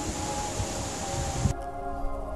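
Steady outdoor hiss with low rumbles and faint music underneath, then about one and a half seconds in an abrupt switch to background music of long held notes.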